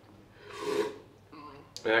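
A person's single breathy exhale, about half a second long, after a gulp of thick smoothie drunk from a blender jug.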